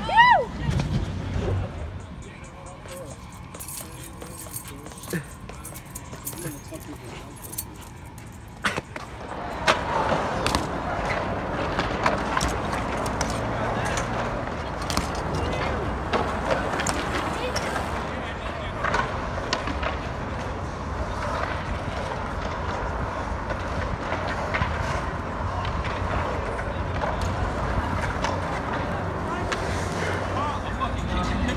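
A short shout at the very start, then BMX bikes on concrete with scattered sharp clicks and knocks. About nine seconds in, a louder haze of background voices and outdoor noise sets in.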